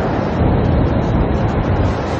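A loud, steady low rumble with no clear pitch, a sound-design rumble in a film's sound track.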